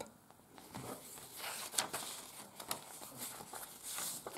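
Paper rustling and sliding as the pages of a handmade junk journal are turned and paper tags and cards are handled: soft, irregular rustles and scrapes.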